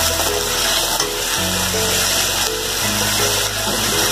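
Hot oil sizzling in a steel pan with a tempering of dried red chillies, curry leaves and mustard seeds, over background music with held bass notes that change every second or so.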